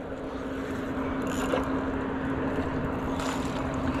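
A steady low motor hum, with two faint brief noises about a second and a half and three seconds in.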